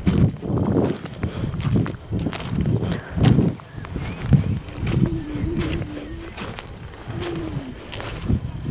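Footsteps crunching on a pebble beach, irregular and about one to two strides a second, under a small songbird repeating short, high, arched chirps about twice a second.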